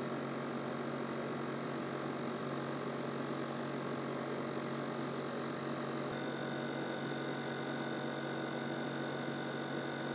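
A steady hum with a few faint high tones running over it, heard inside a stopped car's cabin. About six seconds in, the higher tones shift slightly in pitch.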